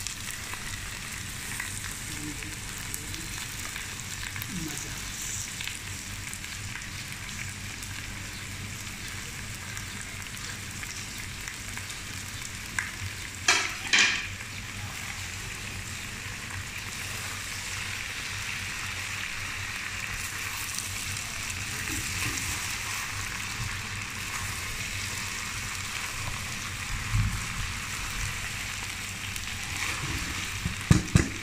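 Okra and mutton sizzling as they fry in a wok while being stirred, a steady hiss throughout. A brief loud clatter about halfway through, and a few short knocks near the end.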